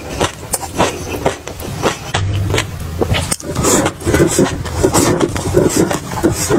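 Close-miked chewing and crunching of a mouthful of food, with many quick, irregular crackles and clicks.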